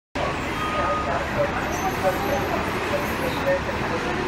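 A city transit bus standing at a bus bay with its engine idling: a steady rumble under a wash of noise, with faint voices in the background.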